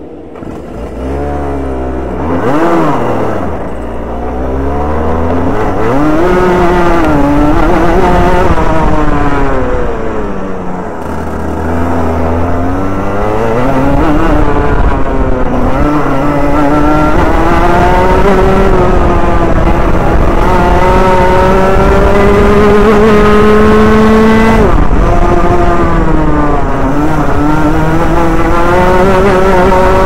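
Rotax Junior Max kart's 125 cc single-cylinder two-stroke engine, loud and close, revving up and down as the kart pulls away, with a quick blip about two seconds in. It then accelerates in long climbs of pitch that drop sharply as the throttle is lifted for corners, about ten seconds in and again near the end.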